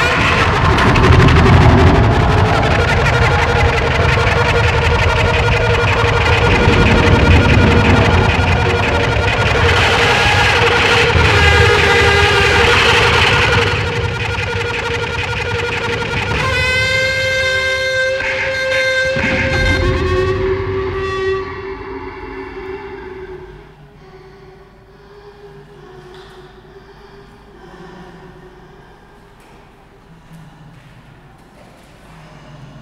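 Amplified daxophone, its bowed wooden tongue making dense, loud, voice-like sounds through the first half. It then settles into one clear pitched tone with strong overtones, and after about three-quarters of the way through it drops to a much quieter held tone.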